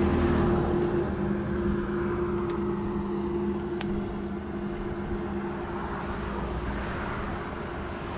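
Road traffic passing close by on a highway: a vehicle's steady engine hum and tyre rumble, loudest at the start and slowly fading away. A couple of faint sharp clicks sound midway.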